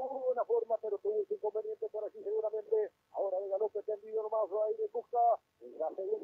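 A man's voice reporting live over a narrow-band telephone or radio link, thin and muffled with no high end.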